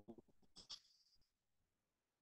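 Near silence: room tone, with a faint brief sound just over half a second in.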